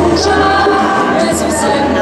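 A group of children and teenagers singing a religious song together, many voices at once.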